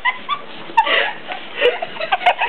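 A small dog whimpering and yipping in several short, high squeaks, some of them falling in pitch.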